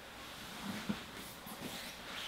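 Faint rustling of cotton jiu-jitsu gis and bodies shifting on a foam mat, with a few soft brief bumps.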